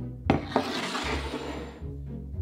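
A knock on a wooden butcher-block counter, then an object slid across the wood with a rasping scrape that lasts about a second, over background music.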